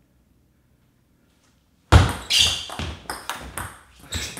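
Near silence for about two seconds, then a sudden sharp ringing hit, followed by a quick run of ringing taps.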